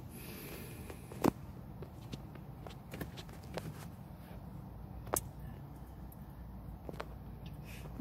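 Low steady rumble inside a parked car, with a few sharp clicks and taps from a phone being handled. The loudest click comes about a second in and another about five seconds in.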